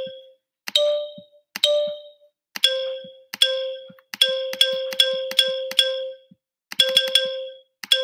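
Virtual xylophone app, its low C bar clicked again and again. About a dozen short, bright struck notes on nearly the same pitch, each starting with a sharp click and ringing briefly. The rhythm is uneven, with a quicker run of notes in the middle.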